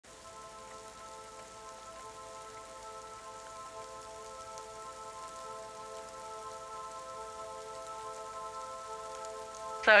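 Opening of an electronic music track: a chord of several steady synthesizer tones held throughout, swelling slowly in level over a soft, even hiss. A spoken voice sample cuts in at the very end.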